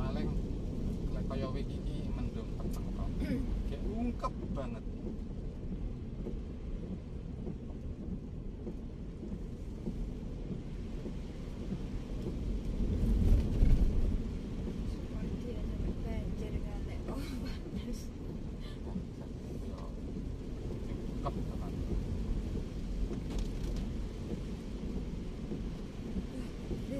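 Steady low in-cabin rumble of a Daihatsu Terios driving on a wet road, with scattered light ticks and taps. A louder rumble swells briefly about halfway through.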